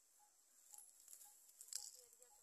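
Near silence: a faint steady high hiss with a faint short note repeating about twice a second, and a few soft crackles in the second half, the loudest near the end.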